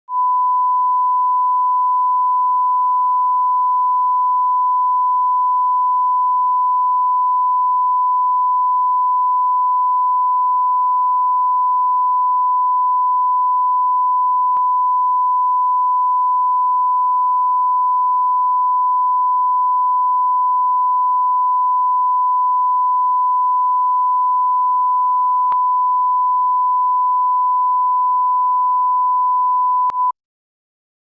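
Bars-and-tone line-up reference tone: one steady, unbroken pure beep at a single pitch, the standard level-setting tone that accompanies colour bars at the head of a video. It stops abruptly at the end.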